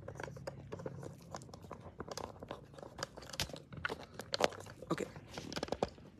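Irregular small clicks, crackles and rustles of handling noise from fingers on the phone and clip-on microphone.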